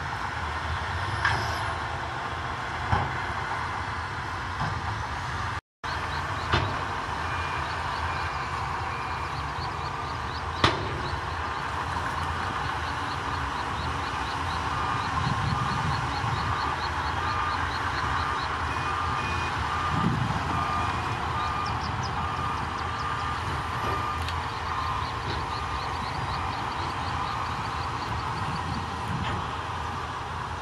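Heavy earthmoving machinery running steadily: Shantui crawler bulldozer engines and tracks working with dump trucks nearby, with a few sharp knocks. About halfway through, a reversing alarm starts beeping steadily and keeps on for around ten seconds.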